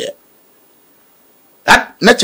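A man's voice making a short, sharp vocal syllable, written as "a quack", with a gap of about a second and a half of near silence between two such utterances.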